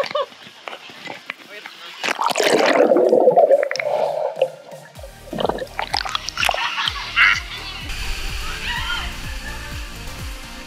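Pool water splashing and sloshing against a waterproof action camera held at the water's surface, loudest from about two to four and a half seconds in. From about five seconds in, electronic music with a steady beat comes in.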